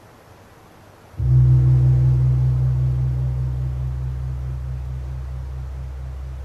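A low-pitched church gong struck once about a second in, ringing on with a slow pulsing waver as it gradually fades. It marks the priest's communion at Mass.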